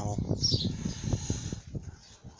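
A man's voice trailing off between phrases, with faint bird chirps in the background.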